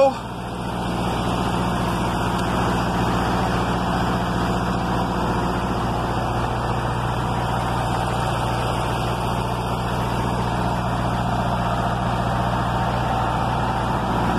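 An engine idling steadily: an even low drone.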